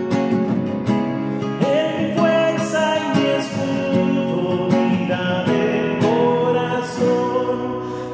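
A man singing a slow Catholic worship hymn, holding long notes, to his own strummed nylon-string classical guitar.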